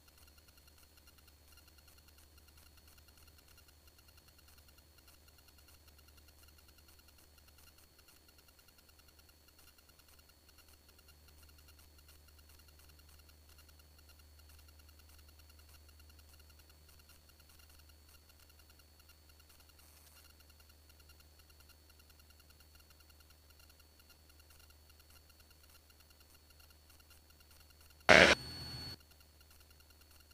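Very faint, steady low drone of a Cessna 172R's four-cylinder engine at full takeoff power, heard only dimly in the recording. There is a brief loud burst near the end.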